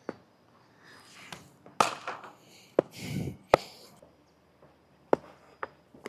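Sharp knocks of cricket batting practice in the nets: a hard leather ball striking a willow bat and hitting the pitch, the loudest knock about two seconds in, with softer scuffs in between.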